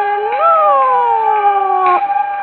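Kunqu opera singing from a 1931 Victor 78 rpm record: a high falsetto voice rises and then glides slowly down on one long held syllable, over a steady held bamboo flute (dizi) note. The sound is narrow and dull, with no highs, as early recordings are.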